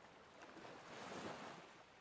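Faint ocean surf: one soft wash of noise that swells up and fades away, loudest a little past the middle.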